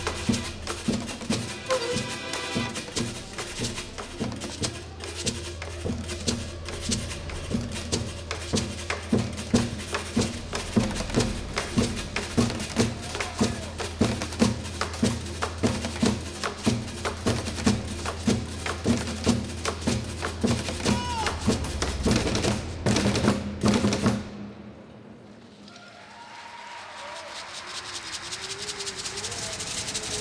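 Percussion ensemble beating drumsticks on plastic drums and containers in a fast, steady rhythm, then stopping suddenly near the end.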